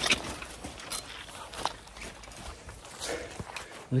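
Footsteps of someone walking in waders, with the rustle of the wader fabric rubbing close to the microphone and a few scattered sharp clicks and knocks.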